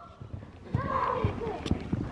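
Hoofbeats of a palomino horse cantering on arena sand toward a low jump: dull, irregular thuds that start about two-thirds of a second in.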